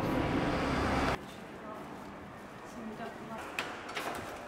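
Night street traffic noise for about a second, cutting off suddenly to a quiet indoor hush. Near the end there are two short clicks from a door handle and latch as the apartment door is opened.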